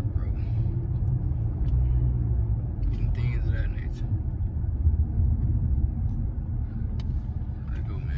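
Low, steady rumble inside a car's cabin, with a few quiet spoken words about three seconds in.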